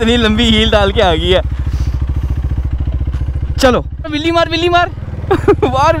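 KTM Duke 390's single-cylinder engine running as the motorcycle rides off, a steady low pulsing that changes note about four seconds in. Voices talk over it.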